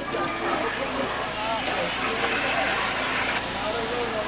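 Voices of onlookers talking in the background, indistinct, with a stretch of rushing, hiss-like noise in the middle.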